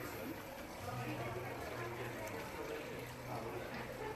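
Faint, indistinct background chatter of people talking in a room, with a low steady hum underneath.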